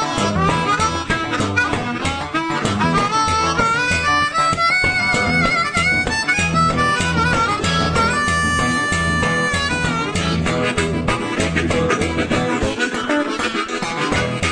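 Blues harmonica solo played cupped against a microphone, with bent notes and long held notes about five and eight seconds in, over electric guitar accompaniment.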